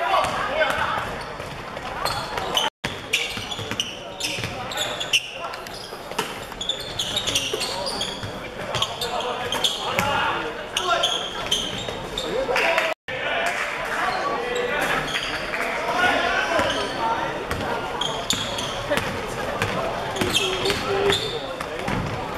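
A basketball dribbling and bouncing on a hardwood gym court during play, with players' and spectators' voices echoing in a large hall. The sound drops out abruptly twice, about 3 and 13 seconds in.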